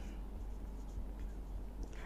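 Faint marker pen writing on a whiteboard.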